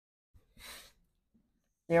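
A person's single short breath, a soft hiss about half a second in. A man's voice starts right at the end.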